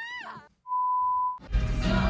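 A voice at the start, then a short gap, then a single steady high beep lasting under a second that cuts off sharply. Live concert music follows from about halfway through.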